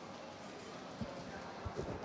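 Shopping-mall ambience: a murmur of distant voices, with a few low footfalls on the hard floor from about a second in.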